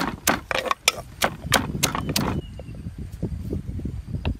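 Wooden pestle pounding long beans in a stone mortar: a regular run of about eight knocks, roughly three a second, that stops about two and a half seconds in.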